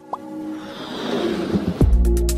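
Animated logo sting with sound effects: a couple of short rising pops at the start, a swell that grows steadily louder, and a deep falling bass boom shortly before the end, leading into music.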